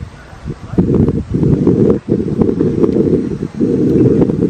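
Wind buffeting a small clip-on microphone: a loud low rumble in gusts, dropping out briefly several times.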